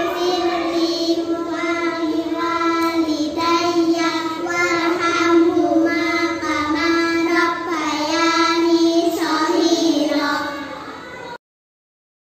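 Three young girls singing a song together. The singing fades a little and then cuts off suddenly near the end.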